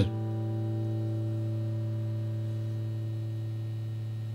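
A final chord on a Squier Stratocaster electric guitar left ringing at the end of the song, held steady and fading slowly.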